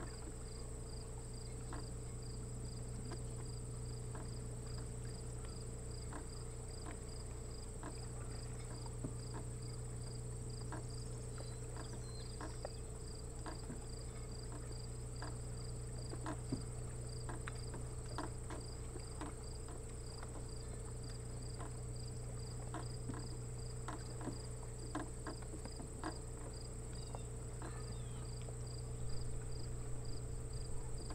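Insects singing steadily, crickets or similar: a continuous high trill with a regular pulsing chirp just below it, over a low steady hum. Scattered light ticks come and go through the middle and end.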